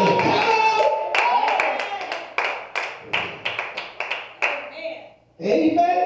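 Congregation clapping in a steady rhythm, about three claps a second, under a man's amplified voice for the first two seconds; the clapping fades and stops near the end.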